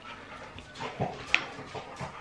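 Soft chewing and mouth sounds of someone eating a spoonful of porridge, with one short light click about two-thirds of the way through.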